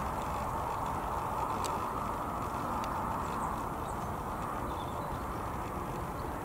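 Steady hum of road traffic, with a few faint, brief high ticks over it.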